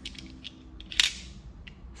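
A single sharp click about a second in, with a few fainter clicks around it, as a hand tool is lifted out of a plastic toolbox.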